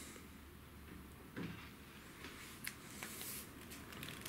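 Faint handling noise from a long carbon bolognese rod being gripped and bent by hand: a soft knock about a third of the way in and a couple of light clicks later, over quiet room tone.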